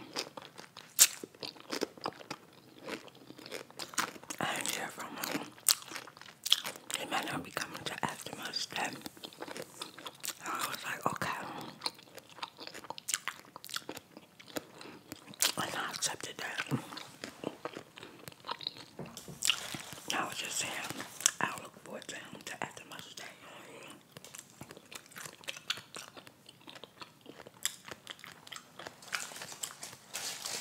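Close-miked chewing of a grilled hot pepper cheese sub with crunchy potato chips in it: an irregular run of crisp crunches and wet mouth sounds.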